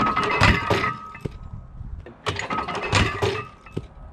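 Homemade wooden counterweight catapult, loaded with about 230 pounds of barbell plates, firing. The arm swings and slams with a crash of wood and clanking metal, and a second crash comes about two and a half seconds in, with a thin ringing tone through both. Part of the wooden frame breaks away on this throw.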